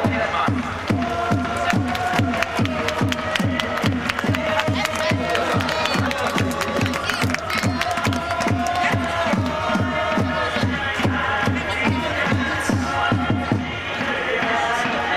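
Football supporters chanting in unison to a bass drum beaten in a steady rhythm of about three beats a second.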